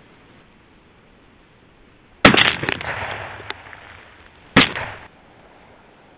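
Rifle fire from a .22-250 Savage Model 110 into a row of water-filled bottles: a sharp bang a little over two seconds in, followed by a spattering, clattering tail, then a second sharp bang a couple of seconds later.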